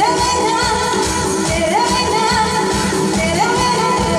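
A woman singing a pop song into a microphone with a live band of drums, keyboard and electric guitar. She holds long notes, each sliding up at its start, a new one about every second and a half.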